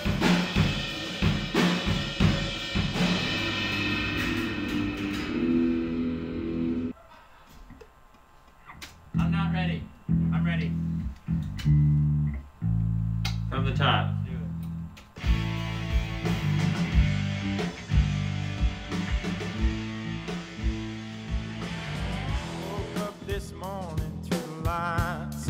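A band playing electric guitar and drum kit. It breaks off about seven seconds in, then plays in short stop-start bursts of held low notes before running on steadily.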